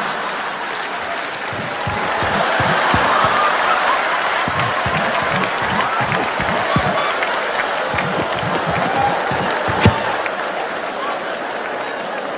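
Large theatre audience laughing and applauding, a sustained wave of crowd noise.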